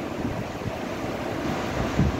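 Steady background noise: an even hiss with no speech in it.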